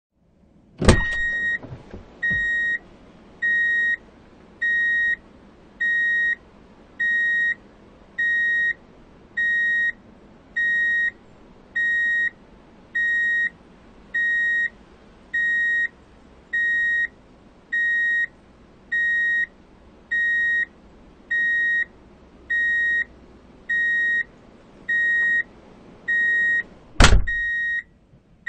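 A vehicle's reversing warning beeper sounding a steady series of single-tone beeps, each about half a second long, about one every 1.2 seconds. There is a sharp knock about a second in and a loud thump near the end.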